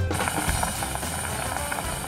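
Beef and mushroom hotpot boiling hard on a portable gas burner: a dense, steady crackling bubble, with background music underneath.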